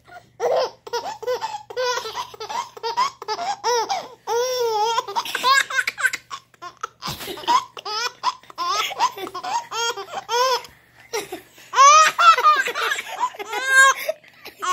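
A baby laughing in a long run of short, high-pitched bursts, with a brief pause about eleven seconds in and the loudest laughter just after it.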